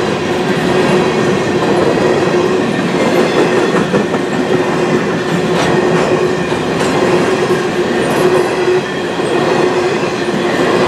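Freight cars of a long mixed train rolling past at a decent speed: a steady, loud rumble and clatter of steel wheels on the rails, with a thin steady hum running beneath it.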